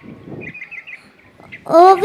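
Faint bird chirps in quick little runs during a pause. Near the end a child's voice over the stage microphone says "Oh".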